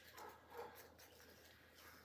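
Dogs barking faintly, which the owner puts down to a kangaroo taunting them at the fence.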